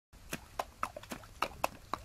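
A pony's hooves striking as it steps through shallow water, in separate sharp hoofbeats about four a second.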